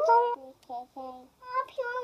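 A young child singing: a run of short, held notes that step up and down, a brief pause, then a longer sung line.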